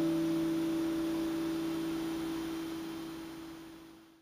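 Acoustic guitar's final chord ringing out with no new strokes, dying away steadily until it is very faint.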